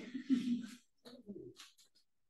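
A person's low wordless vocal sound, like a hum, in the first second, then fainter cloth and movement noises as the partners shift position on the mat.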